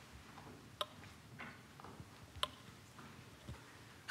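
Quiet room tone in a lecture hall with a few faint, sharp clicks, the two clearest about a second and a half apart.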